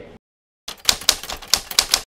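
Typewriter sound effect: a quick run of about seven sharp key strikes, starting about two-thirds of a second in, laid over a title card's text being typed out.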